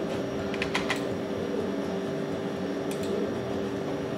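A few light computer keyboard clicks: three close together just under a second in and another about three seconds in, over a steady low hum.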